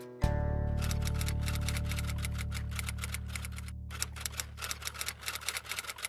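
Typewriter keys clacking in a fast, even run, about six strokes a second with a short break a little past halfway, laid over a deep held musical note that starts sharply just after the beginning and slowly fades.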